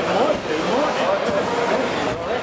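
A close crowd of fans talking and calling out over one another, several voices at once over a steady background din.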